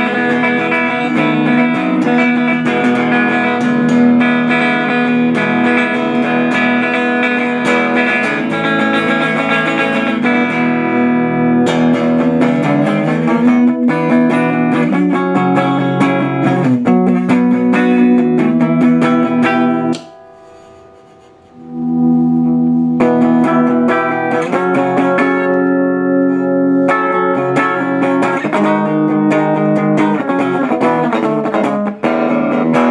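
Ibanez AS73 semi-hollow electric guitar played through an amp, strummed chords and riffs. It falls briefly quiet about twenty seconds in, then the playing resumes.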